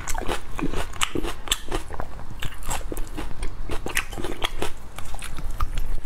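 Close-miked mouth sounds of a person chewing and biting soft braised pork belly (hong shao rou). Many short, irregular clicks and smacks follow each other without a break.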